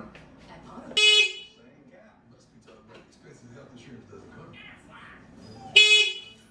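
Stock electric horn on a Sur-Ron electric bike giving two short beeps nearly five seconds apart, each a single buzzy tone. It sounds only intermittently, when touched, a sign that something is wrong with the stock horn.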